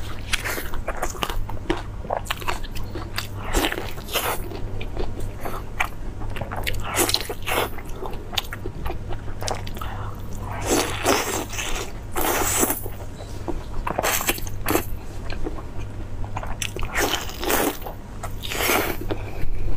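Close-miked eating sounds: biting into and chewing glazed rolls of meat, a dense run of sharp clicks and smacks from the mouth.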